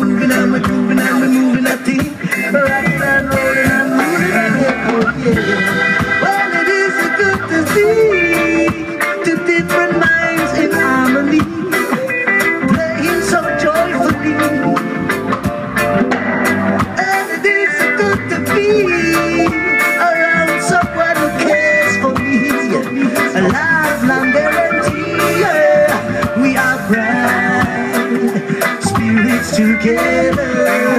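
Live reggae band playing electric guitars, bass, drum kit and keyboard, with a melodic lead line that bends and slides in pitch over a steady groove.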